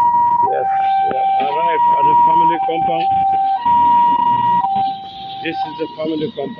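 A two-tone hi-lo siren alternating steadily between a higher and a lower note, each held about a second, with people talking underneath.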